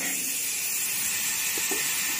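Steady hiss of compressed air rushing through a foam generator's plastic outlet pipe, as foam for foam concrete starts to pour out of it near the end.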